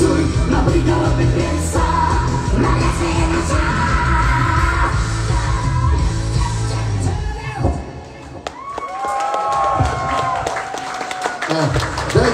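Live pop song: a man's lead vocal and female backing vocals sung over a loud, bass-heavy backing track. About seven seconds in the backing drops out, and the voices hold a long note in harmony on their own, as the song ends.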